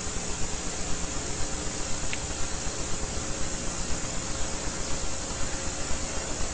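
Steady background hiss of the recording, with a faint hum under it and one small click about two seconds in.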